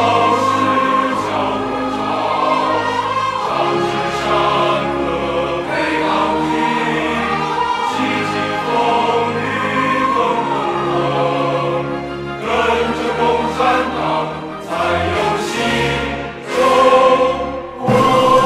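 Large mixed choir of men and women singing a Chinese patriotic song in Mandarin, with instrumental accompaniment and a steady bass line; the music dips briefly near the end, then swells again.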